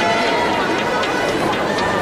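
Arena crowd ambience: many spectators' voices overlapping and calling out in a large hall, at a steady level.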